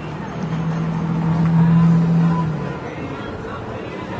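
City street traffic with a vehicle passing, its low steady engine drone swelling and fading over about two seconds, over background chatter from people on the pavement.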